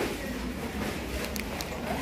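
Busy supermarket background: indistinct voices of other shoppers over a steady low rumble.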